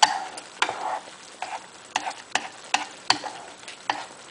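Watery spaghetti in tomato sauce sizzling in a frying pan as it is stirred with chopsticks, with frequent irregular sharp clicks over a steady low hiss. The excess water is cooking off.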